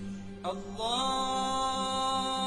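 Background music: a steady drone, then a solo voice enters about half a second in, sliding up into one long held chanted note.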